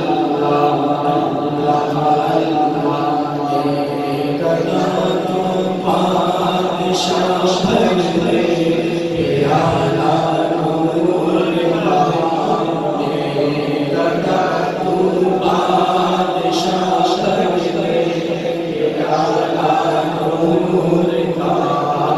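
A man singing a naat unaccompanied into a microphone, in long melodic phrases with held notes that break every few seconds.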